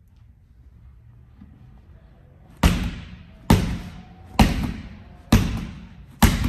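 A medicine ball thrown from the hip hits a wall four times, a sharp thud about every second that rings off briefly in the room. The first thud comes about halfway through; before it there is only a faint low hum.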